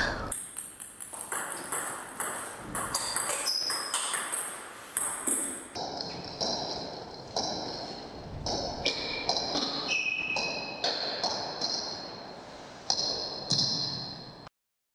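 Table tennis rally: the ball clicking off the bats and bouncing on the table in a quick, continuous run of sharp ticks, each with a brief high ping.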